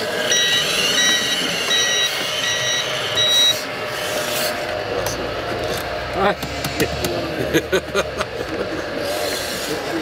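Electronic beeper of a remote-controlled model forklift's sound module: a single high beep repeating about twice a second for roughly three seconds, then stopping.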